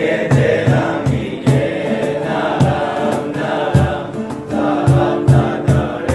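Mixed choir of Israeli soldiers, men and women, singing an Iranian song together over a steady beat.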